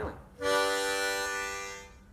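Ten-hole diatonic harmonica sounding a draw chord, several notes at once from air drawn in. It starts about half a second in, is held for about a second and a half, and fades out.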